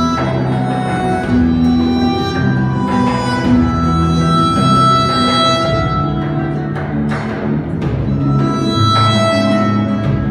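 A flamenco-jazz band playing fandangos live: chromatic harmonica carrying long held melody notes over flamenco guitar, electric bass and hand percussion.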